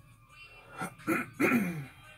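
A man clearing his throat: three short rasps, the last and loudest trailing off with a voiced sound that falls in pitch.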